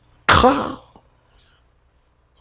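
A man clearing his throat once, a short "kh" sound falling in pitch, about a third of a second in.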